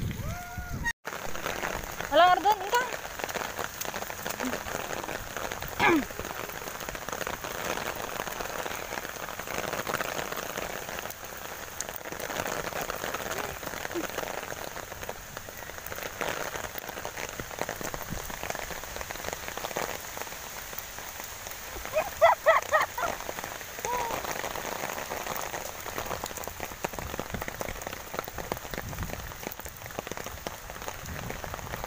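Steady rain falling, a continuous even hiss. A person's voice cuts in briefly a few times.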